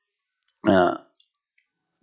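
A man's voice close to a microphone: one short spoken sound a little over half a second in, with a few faint clicks around it.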